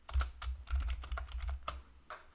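Typing on a computer keyboard: a quick run of separate keystroke clicks as a short line of code is entered.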